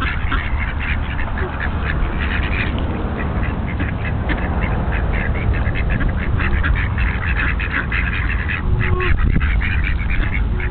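A flock of domestic mallard-type ducks quacking continuously, many short calls overlapping.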